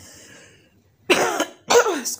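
A person coughs twice in quick succession, about a second in, two short loud coughs.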